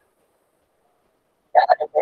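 Near silence, then a person's voice starts speaking about a second and a half in.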